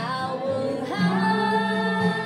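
A woman singing a gospel song solo, with a new note starting about a second in and held.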